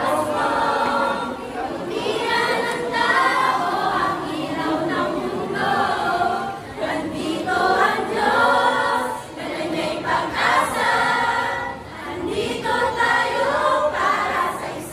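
A group of female voices singing together in unison, in phrases with short breaks between them.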